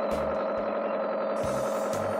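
Cartoon sound effect of a small propeller plane's engine running: a steady, even drone, over children's background music with a pulsing bass beat.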